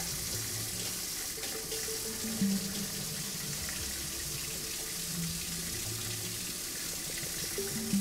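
Kitchen faucet running, a steady stream of water pouring into a sink, with soft background music underneath.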